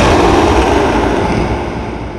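Harsh electronic noise music: a loud, dense wall of noise hits suddenly and then fades slowly, with a deep rumble underneath.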